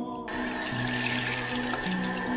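Water running from a tap into a bathroom sink, starting suddenly just after the start and then pouring steadily, over soft background music with slow held notes.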